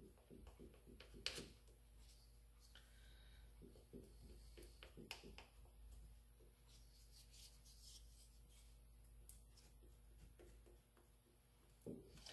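Near silence, with faint light taps and scrapes from a wooden popsicle stick pressing epoxy into cracks in a wooden shovel handle, mostly in the first second and a half and again a little past the middle.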